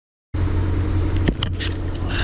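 Silence, then about a third of a second in, a concrete mixer truck's diesel engine starts to be heard running with a steady low rumble as it delivers concrete. A couple of short knocks come about a second and a half in.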